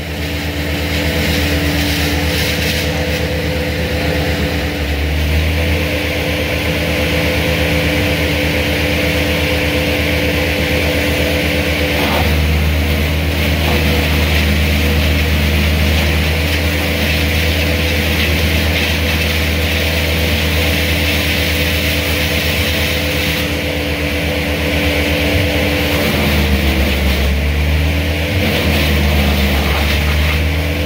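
A large engine of heavy machinery running steadily and loudly, its pitch shifting about five seconds in, again around twelve seconds in, and dipping and recovering near the end.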